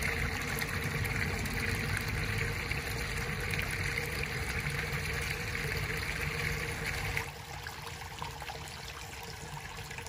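Water trickling and splashing steadily into a rock-edged garden fish pond, turning suddenly softer about seven seconds in.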